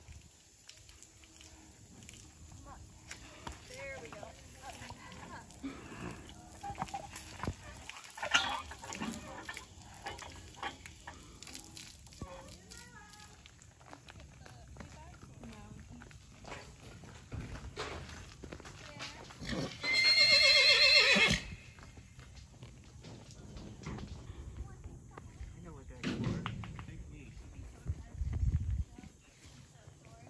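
A horse whinnying once, loud and quavering, for about a second and a half some two-thirds of the way in, with a shorter, lower call falling in pitch near the end.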